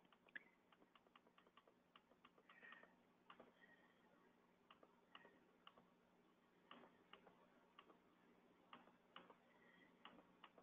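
Near silence: faint room tone with a low steady hum and scattered, irregular light clicks.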